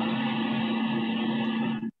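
A steady machine-like hum with one strong low tone and fainter steady overtones, cutting off abruptly near the end. It comes through video-call audio and is dull, with nothing above the mid treble.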